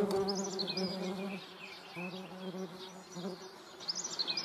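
Wasps buzzing in flight, a wavering wingbeat hum that is strongest in the first second and a half, drops away, then comes back briefly twice. Small birds chirp in the background.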